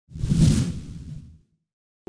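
A whoosh sound effect with a low rumble under a hissing top. It swells quickly, peaks about half a second in, and fades away within a second and a half.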